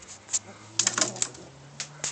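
Grey squirrel crunching food in its mouth: a quick run of sharp, dry crunching clicks about a second in, with single clicks before and near the end, over a faint low hum.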